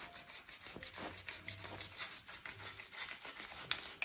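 A sharp knife blade cutting into rigid foam board, a faint, irregular scratching and rubbing as the blade is worked along an angled V-groove.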